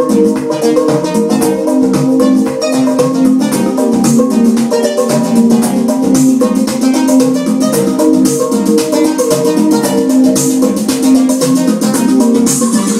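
Live electronic music from vintage drum machines and analog synthesizers: a repeating plucky synth note pattern over fast, even hi-hat ticks, loud and steady throughout.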